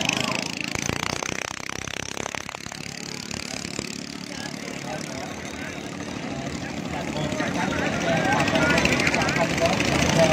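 Small petrol engines of võ lãi long-tail boats running on the river, growing louder in the last few seconds as boats pass close.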